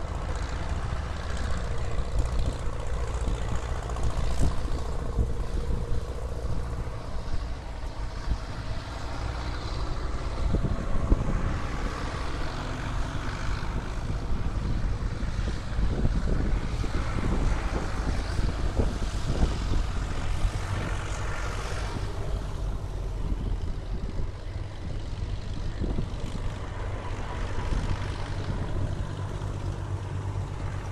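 Tractor engines running as a line of tractors drives past one after another: a steady low engine drone that swells as the nearer tractors go by in the middle stretch and eases off near the end.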